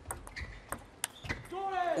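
Celluloid-style plastic table tennis ball in a rally, struck back and forth between paddles and table: a run of sharp clicks, about three a second, ending as the point finishes.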